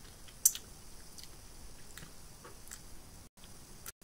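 A person biting into and sucking on a raw lemon wedge: a sharp wet click about half a second in, then a few faint wet mouth clicks.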